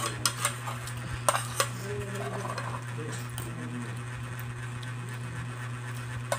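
Metal spoons clinking and scraping against a plate, with a few sharp clicks in the first second and a half and quieter scraping after.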